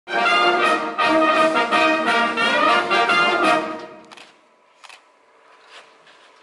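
Brass band music, full sustained chords that stop about four seconds in, followed by a few faint clicks.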